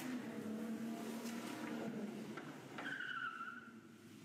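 A speedboat's engine running at speed with a steady drone, fading after about two seconds. About three seconds in, a high-pitched sound is held for under a second, falling slightly.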